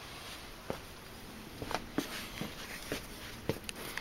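Faint, scattered clicks and light knocks, about seven over four seconds, over quiet room tone.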